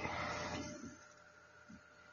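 Faint steady hiss of a desk microphone's background noise, opening with a brief louder rush of noise for under a second.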